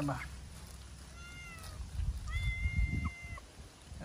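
A cat meowing twice: a short, slightly falling meow about a second in, then a longer, steady meow, with low thumping noise underneath.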